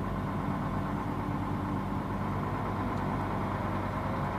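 Delivery truck's diesel engine running at low speed while creeping along, a steady low drone heard from inside the cab.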